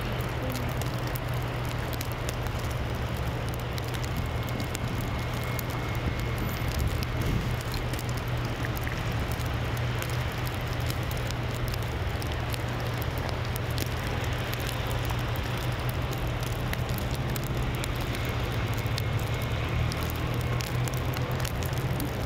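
Wet snow falling steadily, a dense fine crackling patter on the pop-up tent canopy and plastic sheeting. Under it runs a steady low hum.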